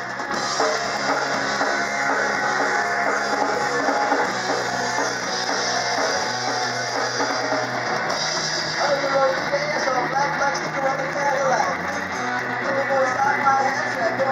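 Live rock band playing: electric guitars and a drum kit, with a voice singing over them in the second half.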